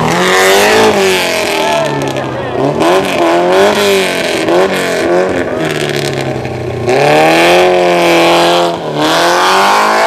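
Rally car engine revving hard through a hairpin. The pitch rises and falls repeatedly as the throttle is worked, then climbs and holds high in the last few seconds with a short dip shortly before the end.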